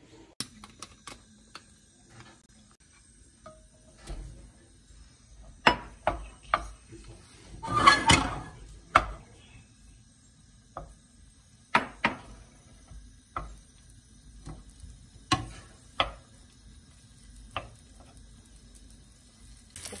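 A wooden spoon knocking and scraping against a nonstick frying pan as cooked rice is broken up and stirred, in scattered taps with a denser clatter of about a second near the middle that is the loudest part.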